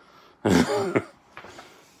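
A man clearing his throat once, in a short burst of about half a second.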